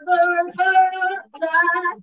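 A woman singing a worship song in three long held notes, with brief breaks between them.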